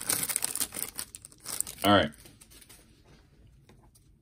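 Foil wrapper of a Panini Prizm basketball card hanger pack crinkling as it is torn open and peeled off the cards. It is a dense crackle that thins out after about a second.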